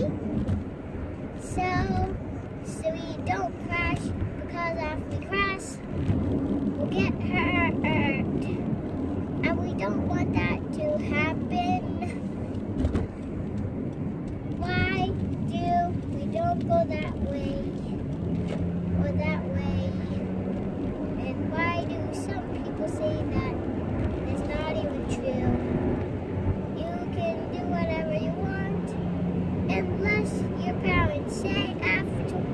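A young child singing in a high, wavering voice with the words indistinct, over a steady low rumble.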